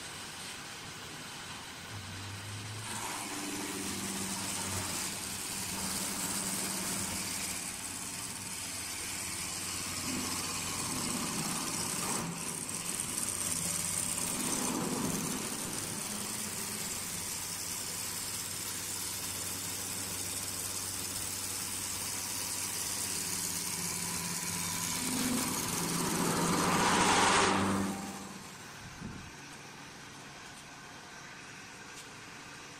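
An automatic wood lathe runs with a steady motor hum while its cutter shaves the spinning wooden blank. The noise builds to its loudest near the end, then drops off suddenly.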